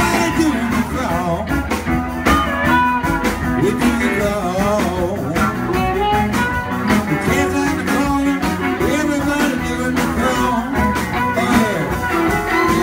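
Live electric blues band playing: harmonica over electric guitar, bass and drum kit, with notes bending in pitch.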